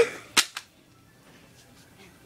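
A brief voiced cry ends right at the start, then a single sharp crack sounds about half a second in, followed by quiet room tone.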